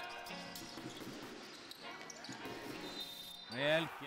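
Live basketball game sound in a gym: a ball being dribbled on the court amid general court noise. Near the end comes a brief loud sound that slides up and back down in pitch.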